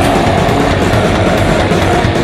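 Death metal music with loud, heavily distorted, down-tuned Schecter Omen electric guitar, programmed drums and a growled vocal.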